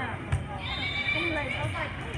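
A volleyball served with a single sharp smack of hand on ball, followed by high-pitched shouting of young girls' voices.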